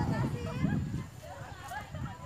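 Indistinct chatter of several people talking at once in the background, louder in the first second.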